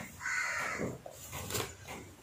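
A single harsh bird call, about half a second long, early on, followed by faint handling noise.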